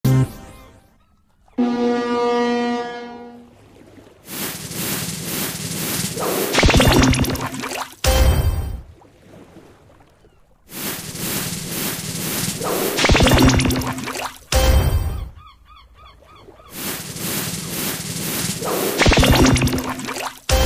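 Big Bass Splash slot game sound effects: a held horn-like tone, then three rounds of spinning-reel audio, each a swelling whoosh with rapid ticking that ends in a sharp hit.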